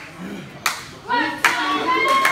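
A series of sharp smacks, a little under a second apart, with voices shouting over them.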